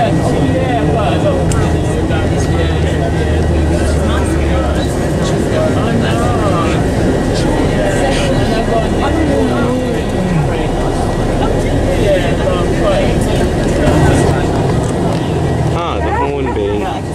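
Steady low drone of a coach's engine and road noise heard from inside the passenger cabin while it drives, with indistinct passenger chatter throughout.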